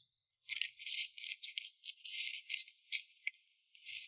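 Close-miked eating sounds: a person slurping and chewing strips of chili-oil-dressed gong cai (tribute vegetable) and then noodles. The sound is an irregular run of short, crisp, high-pitched wet mouth noises.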